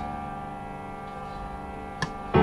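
A held keyboard chord of several notes, slowly fading away.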